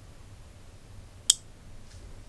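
A single short, sharp click about a second and a half in: a 5 V relay on a four-channel Wi-Fi relay module pulling in as channel 2 switches on.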